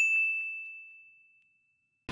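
A single bright, bell-like ding: one high ringing tone struck once that fades out over about a second, a logo-reveal sound effect.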